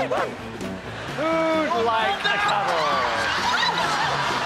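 Background music with wordless, sliding vocal sounds over it, including one steady held note about a second in and falling glides later.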